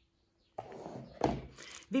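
A metal spoon starting to stir flour into grated zucchini batter in a glass bowl: a scraping, wet mixing sound that begins about half a second in, with one dull knock a little past one second.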